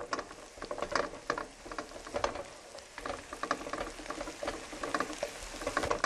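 Diced carrots and minced shallots sautéing in a pan, a steady sizzle with a dense run of quick clicks and scrapes as they are stirred with a wooden spoon.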